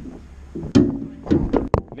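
Brief, broken sounds of a person's voice between phrases of conversation, with a few sharp clicks or knocks in the second half.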